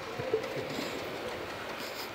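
Steady background noise of a factory workshop, with a few faint knocks.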